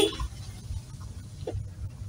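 Low, uneven rumble of a car riding slowly over a rutted, muddy dirt track, heard from inside the cabin. There is a short, sharp, louder sound right at the start and a small one about a second and a half in.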